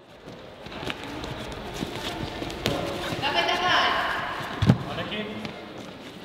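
Echoing sports-hall sound of a competitor on an obstacle course: footsteps and knocks on the wooden floor and gym mats over background voices, which grow louder in the middle. A single heavy thud comes about three-quarters of the way through.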